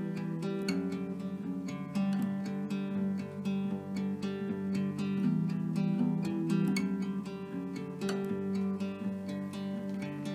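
Instrumental passage of a song: an acoustic guitar strummed in a steady rhythm, its chords changing every second or so, with no singing.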